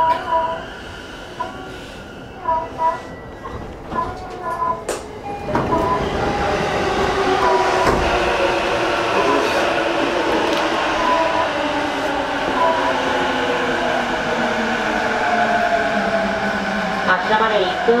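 Onboard sound of a JR East E233-series electric train in a motor car. After a quieter start, running noise swells about five seconds in, and several traction-motor tones glide steadily down in pitch as the train brakes.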